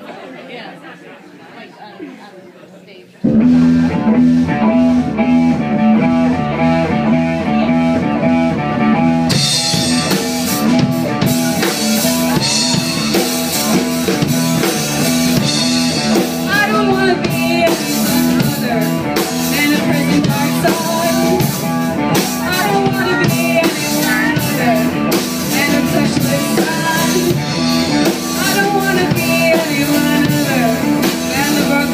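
Live rock band starting a song. After about three seconds of low crowd chatter, electric bass and guitar come in abruptly and loudly with a repeating riff. Drums and cymbals join about six seconds later, and a woman's singing voice comes in around midway.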